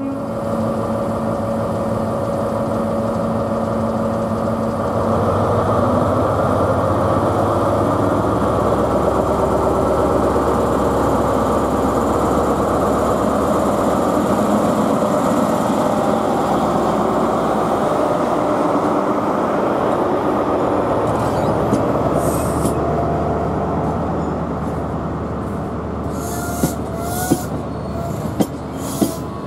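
British Rail Class 43 HST diesel power car pulling away, its engine note building over the first several seconds, holding steady, then easing as the coaches roll past. Near the end, short high-pitched wheel squeal from the passing coaches.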